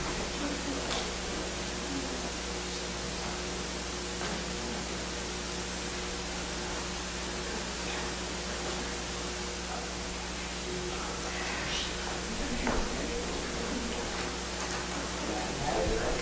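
Steady electrical hum and hiss from an idle sound system, with a few faint murmurs and rustles in the room.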